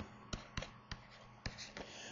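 Stylus tapping and scratching on a tablet screen while handwriting, a handful of faint short clicks.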